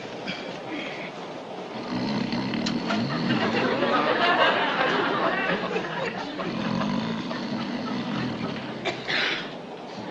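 Railway carriage running sound, a steady rumble and clatter, with a louder sound swelling up in the middle and fading away again.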